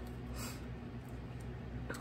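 Quiet room tone in a pause between speech: a steady low hum with a couple of faint soft noises.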